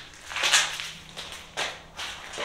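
Gunshots in the background, blanks fired at a mock-combat event: a sharp report about half a second in, and a fainter second one just past the middle.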